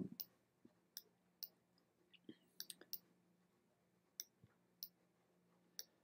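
Faint, scattered computer mouse clicks, about a dozen at irregular intervals with a quick cluster near the middle, as dodge-tool strokes are laid down in Photoshop; a faint low hum sits underneath.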